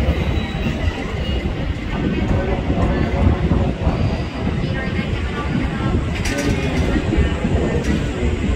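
Steady low rumble of electric trains at a station.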